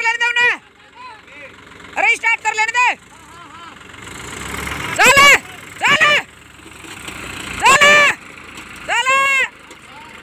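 A series of about six short, loud shouted calls from men, each rising and falling in pitch, with tractor diesel engines running underneath between the calls.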